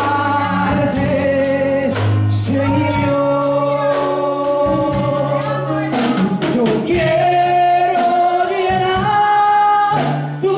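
A woman singing a gospel-style worship song into a microphone, holding long notes over accompanying music with a percussion beat about twice a second.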